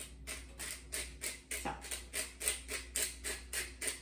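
Hand pepper mill grinding peppercorns: an even run of short, gritty grinding strokes, about four twists a second, with no pause.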